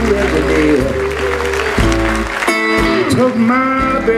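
Live blues band playing a slow number on acoustic guitar, electric guitar, bass guitar and drums, with sustained notes that bend and slide, and a brighter held passage in the second half.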